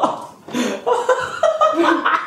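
A person laughing in short bursts, starting about half a second in.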